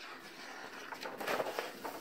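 Paper rustling and a few light crinkles as a page of a large picture book is turned.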